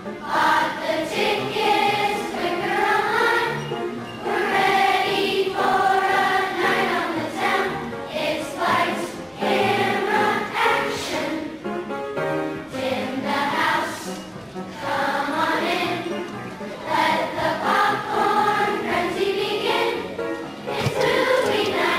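Children's choir of fourth and fifth graders singing a song together, phrase after phrase with short breaks between lines.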